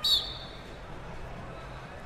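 A brief high-pitched squeal that falls slightly in pitch, right at the start, followed by steady, low arena background noise with a faint hum.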